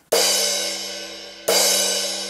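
Paiste Color Sound 900 16-inch crash cymbal struck twice, about a second and a half apart, each hit left to ring out and fade slowly. It has a metallic tone that the player finds "a little bit too much metal" for his taste.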